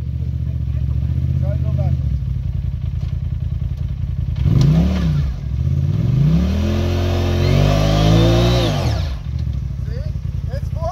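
Polaris RZR side-by-side's engine idling, then revved twice: a short rev about four and a half seconds in and a longer one from about six to nine seconds that rises, holds and falls. The machine is high-centred on a dirt mound with its front wheels off the ground, and the revs are the driver trying to back it off.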